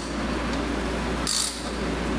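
Ratchet and extension being handled on an oil filter wrench on a motorcycle's oil filter, metal on metal, with a short high metallic rasp about midway, over a steady low hum.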